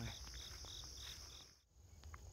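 Insect chorus in summer woods: a steady high trill with a separate chirp pulsing about three times a second. Both break off suddenly near the end.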